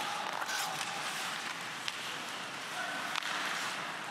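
Ice hockey game sound during play: a steady scrape and hiss of skates on the ice, with a few sharp clicks of sticks and puck.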